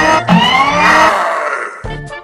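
Soundtrack music with a loud, drawn-out pitched sound that glides upward and dies away a little over a second in, after which the music carries on.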